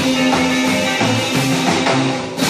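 Live rock and roll band playing: acoustic guitar, upright double bass and drum kit.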